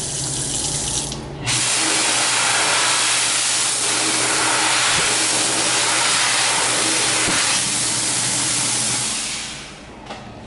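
Water from a Dyson Airblade Tap running briefly over hands. About a second and a half in, the tap's built-in hand dryer cuts in with a loud, steady rush of air blown from its side arms, which fades away near the end.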